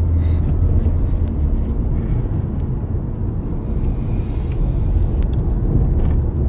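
Inside a car's cabin: a steady low rumble from the car's engine and road noise.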